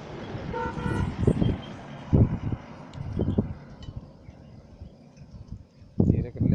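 A short horn-like tone about a second in, in a few broken pieces, followed by several dull low thumps, then quieter.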